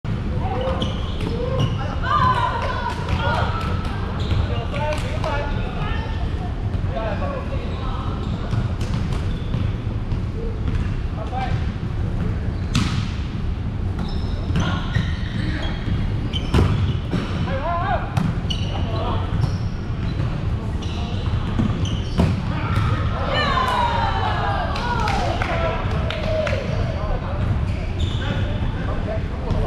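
Volleyball play: a string of sharp hits and thuds of the ball being struck and bouncing, with players' voices calling out near the start and again near the end.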